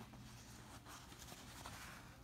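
Faint rustling and rubbing of hands moving over stiff denim fabric.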